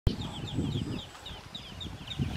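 A brood of newly hatched Pekin ducklings peeping: many short, high, downward-sliding cheeps, overlapping several to the second.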